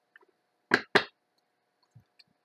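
Two sharp knocks on a tabletop, about a quarter of a second apart.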